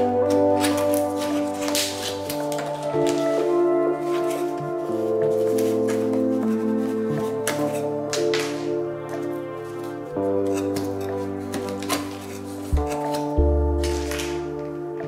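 Background music: sustained chords that change every two to three seconds.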